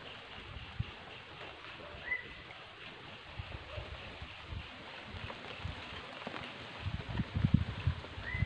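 Quiet rural outdoor ambience: a faint, fast, evenly repeated chirping runs on high up, a single short rising bird chirp comes about two seconds in, and low thumps gather near the end.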